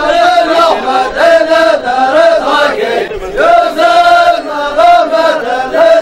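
A group of men chanting in unison, a traditional Dhofari group chant, sung in long held phrases that step up and down in pitch, with short breaks between phrases.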